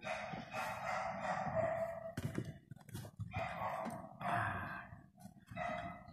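A dog vocalising faintly: a run of calls separated by short gaps, the first lasting about two seconds.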